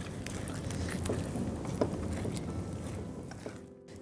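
A spatula stirring a thick, creamy yogurt and cashew-paste gravy in a nonstick pan, a steady scraping and stirring that fades out near the end.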